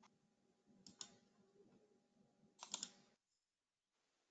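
Near silence on a video call: a few faint computer clicks over a low microphone hum, then the sound cuts off to dead silence a little after three seconds in as one participant leaves the call.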